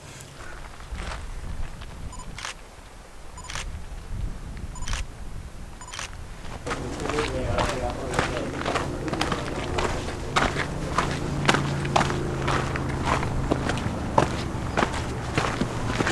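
Footsteps on a rocky dirt hiking trail, beginning about seven seconds in and going on at a steady walking pace. Before that there is only a low rumble with a few scattered clicks.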